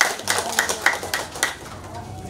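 Applause from a small group, clapping together in an even rhythm of about three to four claps a second, dying away about a second and a half in.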